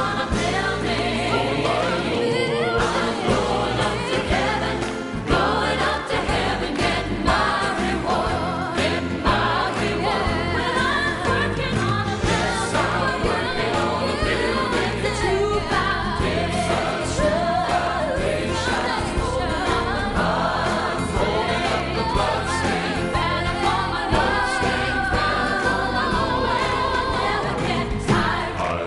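Gospel song with a choir singing over a full band, with a steady beat and strong bass.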